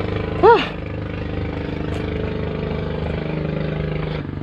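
A steady engine hum holding one pitch.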